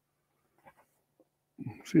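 Faint, brief rustles of a large paper map being handled, then a man's voice saying a short word near the end.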